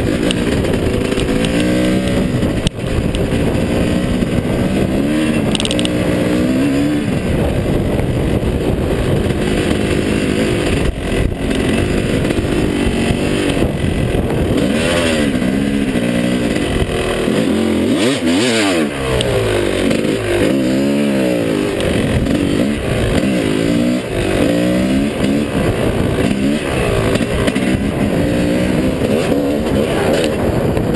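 2005 Yamaha YZ250's single-cylinder two-stroke engine under way off-road, its pitch climbing and falling over and over as the throttle is worked through the gears, with a brief drop about two-thirds of the way through before it revs back up.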